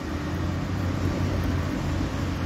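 A steady low engine hum with a noisy wash over it, like a vehicle running.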